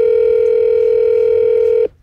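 Telephone ringback tone: one steady two-second ring heard down the line on an outgoing call, cutting off suddenly.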